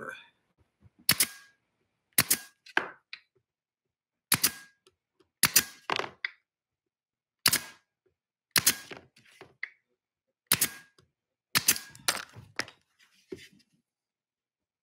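Senco pneumatic nailer firing fasteners into a small plywood box: a sharp shot roughly every second, about a dozen in all, some in quick pairs.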